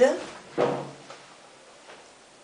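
Shirts on plastic hangers being handled and swapped, with a sharp clack or knock of the hangers at the start, followed by a short bit of voice.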